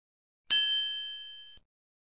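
A single bright, bell-like ding used as a logo-reveal sound effect, struck about half a second in with several high ringing tones that fade over about a second and then cut off.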